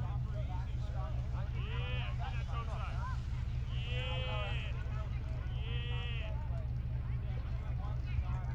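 Steady low hum of an idling car engine heard from inside the cabin. Over it come high-pitched voices calling out from a ski slope, with three longer calls about two, four and six seconds in.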